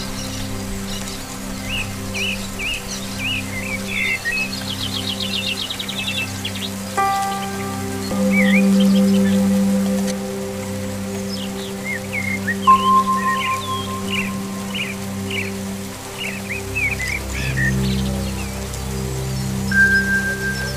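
Slow ambient music of long held notes that shift every few seconds, mixed with steady rain and bird song. Clusters of short chirping calls come about two to five seconds in and again around eleven to sixteen seconds, with a rapid trill near the start.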